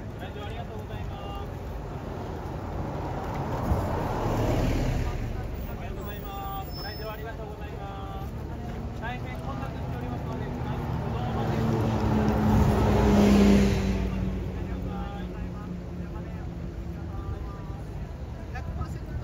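City route buses pulling out and passing close one after another, engines swelling as each goes by: once about four seconds in and again, louder, about thirteen seconds in.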